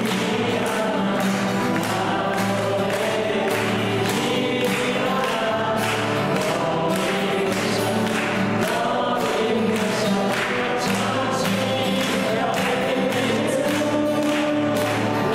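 A song sung by several voices together, over a steady regular beat.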